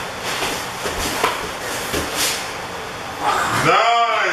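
Grappling noise: gi fabric rubbing and bodies shifting on the mats, with a few short knocks about one and two seconds in. A man's voice comes in near the end.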